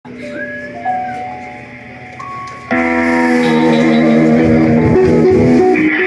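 Rock band playing live, electric guitar to the fore: a few sparse held notes at first, then a little under three seconds in the full band comes in loud with many sustained notes together.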